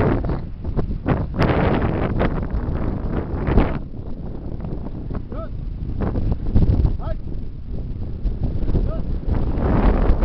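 Wind buffeting the microphone in a steady low rumble, louder in the first few seconds, with a few brief shouted calls of voices in the second half.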